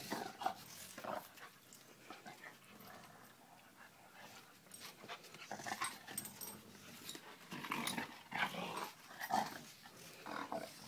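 Two dogs play-fighting: scuffling and short dog vocal sounds in irregular bursts, busiest near the start and again in the last two or three seconds.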